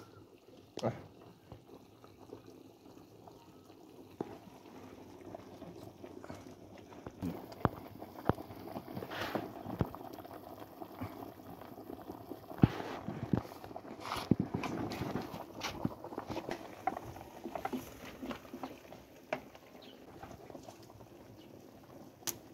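A pot of leafy vegetables boiling over an open wood fire: steady bubbling with sharp crackles and pops from the burning sticks, busiest through the middle of the stretch.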